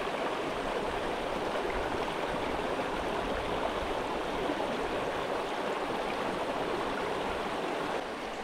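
Shallow rocky creek running steadily over rock ledges and riffles, an even rushing of water.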